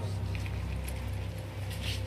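Quiet, steady low drone of suspenseful background music, with faint hiss above it.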